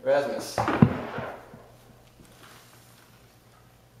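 A brief voice sound, then a single loud knock about a second in that dies away within half a second: a person moving about and knocking something against wood.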